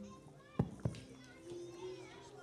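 Faint chatter of children's voices in a hall with soft held musical notes, and two sharp knocks a quarter-second apart a little past the middle.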